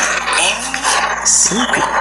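A front-camera video recorded on a Samsung Galaxy M55 playing back through the phone's speaker. The recorded voice is buried in a lot of harsh, hissy noise that comes and goes in patches. The phone's audio capture picks up this noise in a very strange way, which the owner suspects is a defect in his unit.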